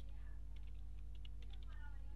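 Computer keyboard being typed on: faint, irregular key clicks over a steady low electrical hum.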